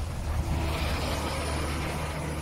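A motor vehicle's engine running close by: a steady low hum that sets in abruptly, with a hiss rising over it about half a second in.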